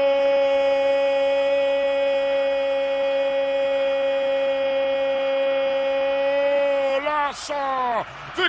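A male Spanish-language football commentator's drawn-out goal cry, a single note held steady for about seven seconds before it breaks into short falling syllables near the end, celebrating a goal.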